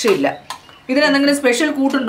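A steel spoon clinking and scraping on a stainless steel thali of kanji, under a person's voice drawn out in long held sounds.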